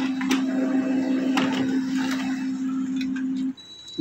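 Canon LBP215X laser printer running as it prints a page: a steady mechanical hum with a few sharp clicks, cutting off about three and a half seconds in as the page finishes.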